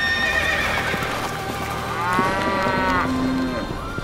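Animal calls: a held call at the start, then a longer call that rises and falls about two seconds in, followed by a lower steady call.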